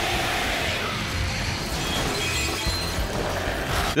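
Cartoon soundtrack: dense dramatic music mixed with crashing, shattering sound effects, held at a steady level.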